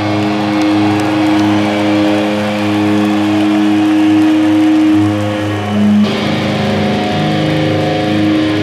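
Distorted electric guitar solo played live through a stage rig, holding long sustained notes that change pitch about six seconds in.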